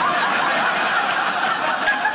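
Studio audience laughing together, a loud, steady wave of laughter.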